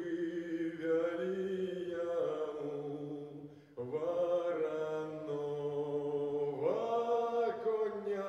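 A man singing a slow song into a microphone in long held notes over lower sustained accompaniment notes. He pauses briefly between phrases a little under four seconds in.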